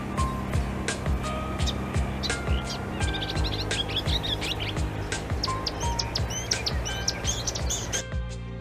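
Small birds chirping and singing, many short notes and brief whistles, growing busier about halfway through, mixed with background music that has a steady beat.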